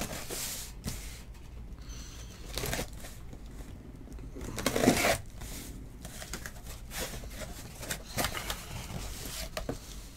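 A sealed cardboard case of trading-card boxes being torn open and unpacked: irregular ripping and rustling of tape and cardboard with scattered clicks and knocks, the loudest rip about five seconds in.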